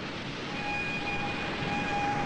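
Steady industrial machinery noise, with a high, steady whine that comes in about half a second in.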